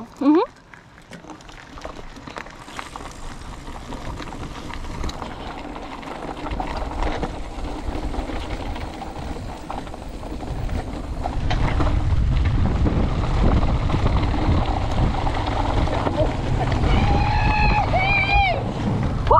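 Mountain bike rolling down a gravel and dirt trail, heard from the rider's action camera: wind rushing over the microphone with tyre noise and rattle, getting louder as speed builds and heaviest in the last third.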